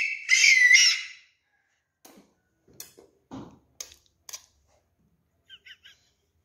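A toddler's high-pitched squealing laugh for about the first second, then mostly quiet with a few faint clicks and short high squeaks near the end.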